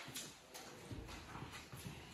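Faint rustling and light clicks of a cloth head wrap being pulled and tied around a head.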